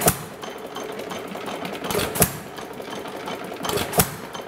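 1½ hp Gade air-cooled hit-and-miss engine running, with a sharp firing bang about every two seconds (three in all). Between the bangs it coasts on its flywheels with a fast, light mechanical clatter.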